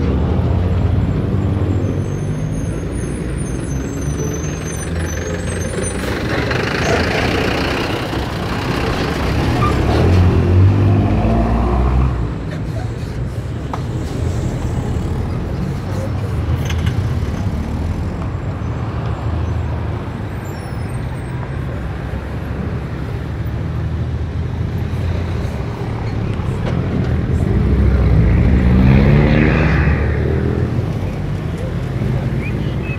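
Motor vehicle engine running in road traffic, heard from inside a car, with its pitch rising as a vehicle speeds up about ten seconds in and again near the end.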